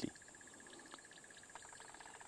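Quiet outdoor ambience with a faint, rapid, evenly pulsed high-pitched call from a small animal, with a few fainter chirps.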